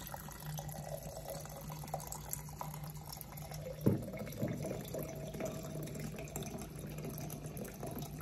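Vodka pouring in a steady stream from a plastic bottle into a glass jar, a continuous trickling splash. A single sharp knock comes about four seconds in, and a steady low hum runs underneath.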